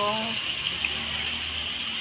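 Ground meat, shrimp and diced broccoli stem sizzling steadily in hot oil in a wok.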